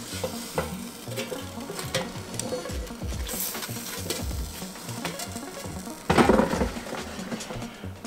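Metal kitchen tongs clicking and scraping against an air fryer's basket while breaded chicken breasts are turned over partway through cooking. About six seconds in there is a louder burst of scraping and clattering.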